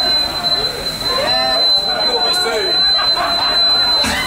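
Indistinct people's voices, with a steady high-pitched electronic tone running underneath throughout.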